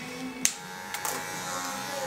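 Electric hair clippers running with a steady buzz, a sharp click about half a second in and another at the end.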